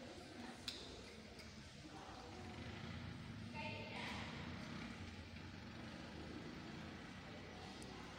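Quiet room tone with faint voices, and a single sharp click a little under a second in.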